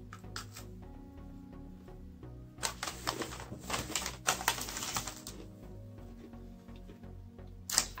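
Soft background music with sustained notes, joined from about two and a half to five seconds in by a run of crisp crackles and clicks from the Oreo snacking: cookies crunching and the plastic package being handled.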